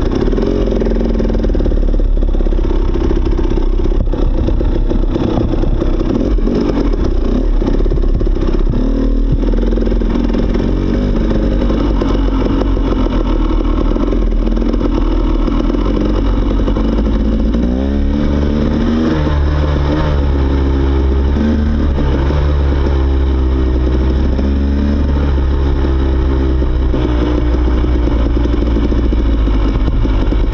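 Dirt bike engine running as the bike rides slowly along a wet, muddy trail. In the second half the engine note rises and falls several times as the throttle is worked.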